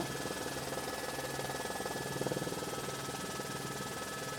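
Steady aircraft engine and rotor noise heard from inside the cabin through the intercom: a low hum with a fast, even pulsing and a faint high whine.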